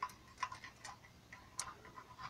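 A few faint, light ticks and taps at irregular intervals from handling a tape measure and pencil against the straightedge rulers while measuring and marking.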